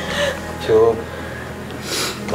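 A teenage boy crying: a short wavering sob about halfway through, then a quick noisy intake of breath near the end.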